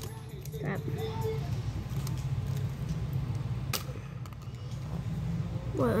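Low rumble of handling noise on a phone microphone, with a few faint clicks and one sharper click a little past the middle, and a brief murmur of a voice about a second in.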